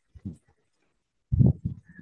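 A man's short laugh: a few quick voiced pulses about a second and a half in.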